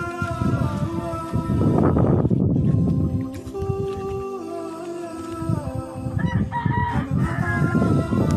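A rooster crowing over background music with a steady beat.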